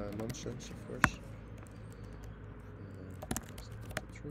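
Computer keyboard keystrokes: a few sharp, separate clicks, one loud about a second in and two close together a little past three seconds. A brief voiced hum comes at the very start.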